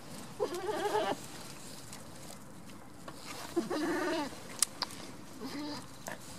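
A goat bleating twice, each call lasting about two-thirds of a second with a wavering pitch, then a shorter, fainter bleat near the end. Two sharp clicks come between the second and third calls.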